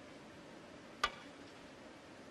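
A snooker cue tip striking the cue ball, one sharp click about a second in, over a faint steady hush.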